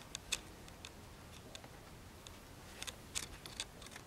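Faint handling clicks and taps as hands work a small clay figure on its wooden stand: two sharp clicks near the start and a cluster about three seconds in, over quiet room tone.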